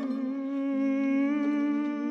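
Soprano and mezzo-soprano humming on "m" in held, slightly wavering pitches, with soft flute and violin in a contemporary chamber piece.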